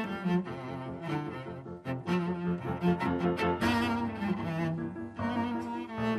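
Cello bowed, playing a moving line of changing notes, with piano accompaniment in a cello and piano duo.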